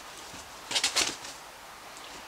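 Short rustle and scrape of packing foam being handled and pulled away from the wrapped fridge, a quick cluster of strokes about a second in.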